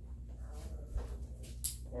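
Faint whimpering from a young Rhodesian Ridgeback puppy being handled, with a brief sharp rustle near the end.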